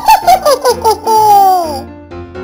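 High-pitched, cartoon-like giggle: about six quick rising-and-falling notes, then one long falling note, over soft background music.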